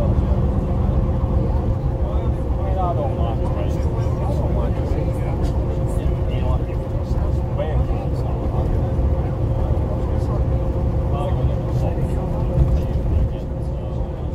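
Inside a Bristol RELH coach under way: the rear-mounted diesel engine and drivetrain give a steady rumble, with a thin steady whine running above it. Passengers chat quietly in the background.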